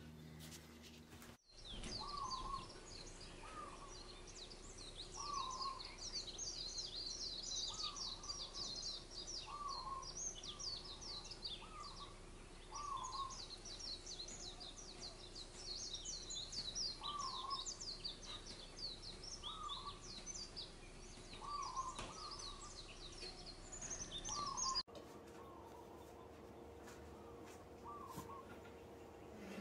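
Many small birds chirping in quick short calls, with a lower call repeating every second or two. The birdsong starts suddenly a second or two in and stops suddenly near the end, with quiet room tone on either side.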